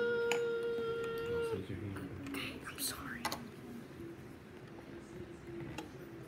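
A child's voice making one long held vocal sound: it slides up in pitch, holds steady for about a second and a half, then gives way to softer, lower vocalising. A few short clicks of LEGO pieces being handled come through.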